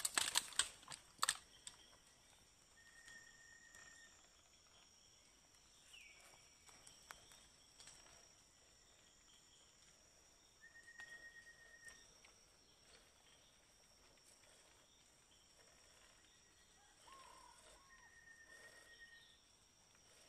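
Quiet forest ambience: a few sharp clicks or knocks in the first second or so, the loudest sounds here, then a faint steady high-pitched drone and a bird's short whistled note repeated three times, several seconds apart.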